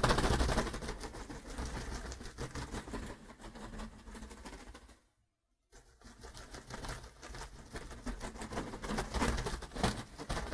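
Rapid, irregular clicking and pattering. The sound cuts out completely for under a second just past the middle, then the clicking resumes.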